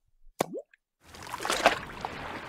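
A single water-drop plop with a quick upward pitch glide about half a second in, then a rushing wash of moving water that starts about a second in and swells briefly before settling.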